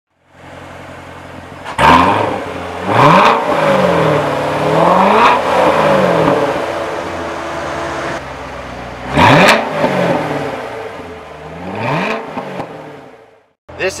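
Corvette Grand Sport's 6.2-litre V8 idling and free-revved in a series of blips, each rising quickly in pitch and falling back to idle, before the sound fades out near the end.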